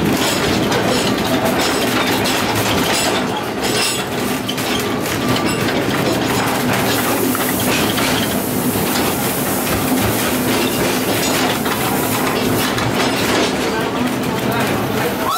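Narrow-gauge railway carriage running along the track, heard from inside, with a steady rumble and irregular sharp clicks as the wheels pass over rail joints and pointwork.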